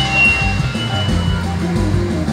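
Instrumental backing music with a bass line stepping between low notes, played through a stage PA during a sound check.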